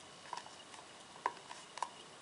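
Four light plastic clicks as the front and back of a Seidio Obex waterproof phone case are pressed together by hand along the edge.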